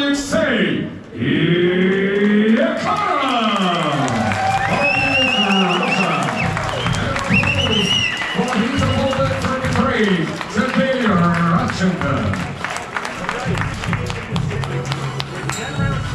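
A man's long, drawn-out announcing calls over arena music, falling and rising in pitch, with crowd applause building in the second half as the winner is declared.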